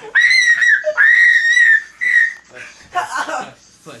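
A person's high-pitched squeals, three in a row, each held at nearly one pitch, the last one shorter. Quieter voice sounds follow near the end.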